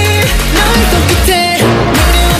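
K-pop song: a male voice singing over an electronic pop beat, with deep bass notes that slide downward several times.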